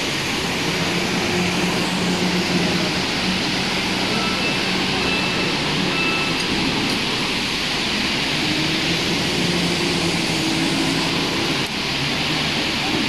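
Steady machinery noise of an aluminium processing plant filling a large factory hall, with faint voices under it and a few short, faint high beeps around the middle.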